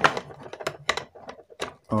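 Hard plastic shape pieces clicking and knocking against the plastic shell of a shape-sorter toy as a child's hands work a cross-shaped piece into its slot. A quick irregular run of sharp clicks.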